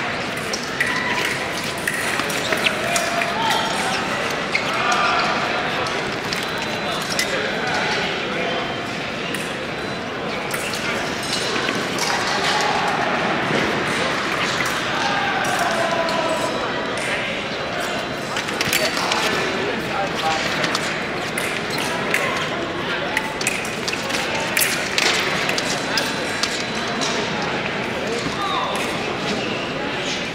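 Busy fencing hall: a steady babble of many voices, broken by sharp clicks and clacks of fencing blades meeting and fencers' shoes striking the strip, with occasional electronic pings.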